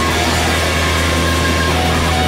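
Alternative rock recording: a loud, steady wall of distorted electric guitar over a held low drone, with a few short held high notes coming and going.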